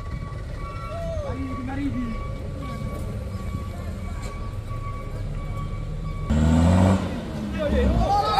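Light diesel truck engine labouring steadily as the truck climbs a rutted, muddy slope, with a louder burst of engine noise lasting under a second about six seconds in.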